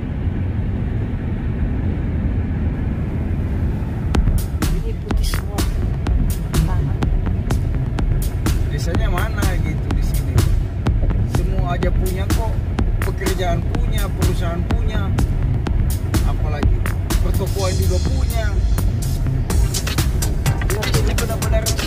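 A car's low, steady road and engine rumble heard from inside the cabin, with music that has a beat and a singing melody coming in about four seconds in.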